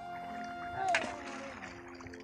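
Background music with long held notes, and one sharp splash in the water about a second in, from a stone thrown into a shallow river.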